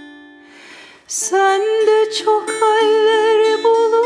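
A woman's solo voice singing a Turkish folk song (türkü) over a ruzba, a small long-necked lute of the bağlama family. Her held note fades away in the first second, and she comes back in about a second in with long wavering notes over plucked ruzba notes.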